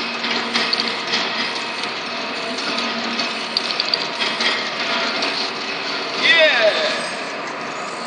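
Automatic rotary bottle-capping machine for metal crimp caps running, with a steady mechanical clatter and many small rapid clicks from the turret and the glass bottles on the conveyor.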